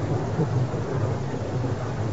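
Steady background hiss with a low hum in a pause between a man's spoken phrases, typical of an old sermon recording.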